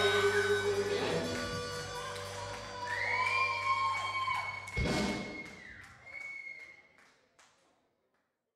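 Live rock band at the end of a song, the last chord ringing and dying away. A sustained high tone comes in about three seconds in, there is a loud thump about five seconds in, and scattered clicks follow as the sound fades out.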